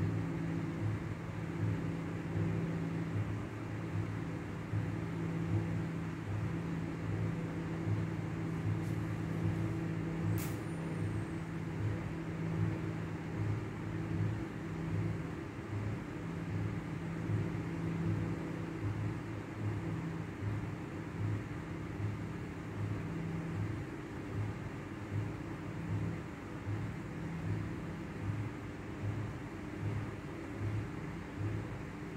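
A steady low mechanical hum with a regular throb, about three pulses every two seconds, like an idling engine or running machine. A single sharp click comes about ten seconds in.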